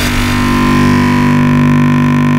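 A loud, steady electronic drone in a dubstep/bass-music track: the beat has dropped out and a few low held synthesizer tones sustain without change.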